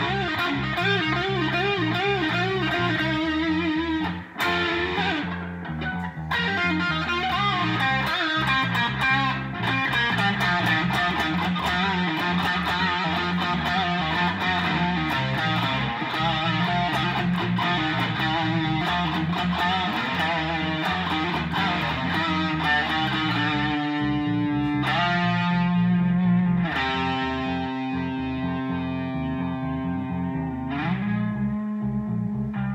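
Electric guitar playing blues lead lines with bent, wavering notes, over a steady low bass line. Near the end it moves to longer held notes.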